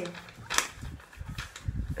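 A single sharp click about half a second in, followed by faint low rustling and bumps.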